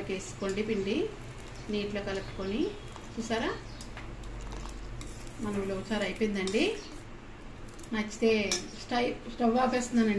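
Steel ladle stirring thick ulava charu (horse gram soup) in a stainless steel pot, with light clinks and scrapes of metal on metal. A voice talks in short snatches over it and is the loudest sound.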